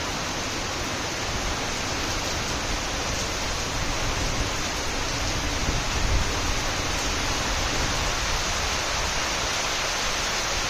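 Rain and wind at sea: a steady, even hiss of heavy rain, with low gusts of wind swelling about halfway through.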